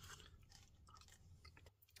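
Faint chewing of a mouthful of rehydrated biscuits and gravy, with small soft mouth clicks.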